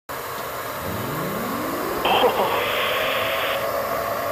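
Steady hiss of aircraft cockpit noise. About a second in, a whine rises in pitch. From about two seconds in comes a burst of radio static with garbled radio chatter, and a steady tone holds under it.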